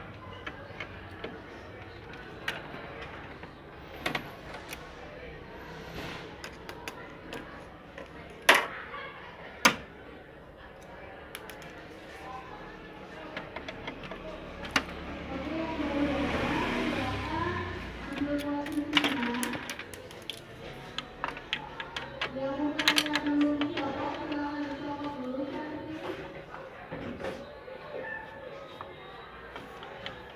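Scattered clicks and knocks of plastic and metal parts being handled inside a photocopier as it is taken apart around its fixing (fuser) unit. Two sharp knocks come a little over a second apart near the middle.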